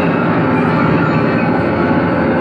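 A grand piano played four-hands by two pianists at one keyboard: a loud, dense, unbroken mass of many notes at once, heaviest in the low and middle range.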